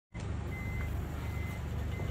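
A vehicle engine idling, a low steady rumble, with two faint short high beeps about half a second and a second and a quarter in.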